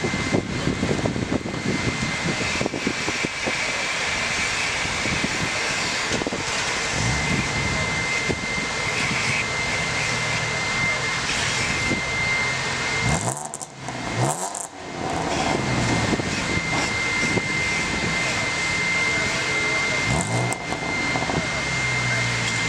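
Car engines running, over a steady loud roar with a thin high whine held for most of the time. There are engine revs rising in pitch about seven seconds in, around thirteen to fifteen seconds in, and about twenty seconds in.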